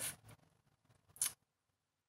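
A woman's speech trails off at the very start, followed by near silence broken by one short, high hiss about a second in.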